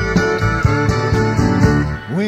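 Instrumental intro of a country band recording: guitars over bass and drums, keeping a steady beat of about two a second.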